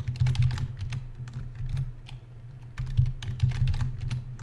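Computer keyboard typing: two quick runs of keystrokes with a sparser stretch of about a second between them.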